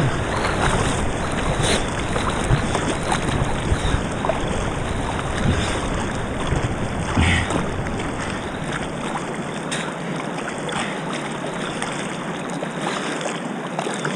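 Kayak on a moving river: a steady wash of flowing water with scattered splashes from the paddle and current. A low rumble of wind on the microphone fades out about eight or nine seconds in.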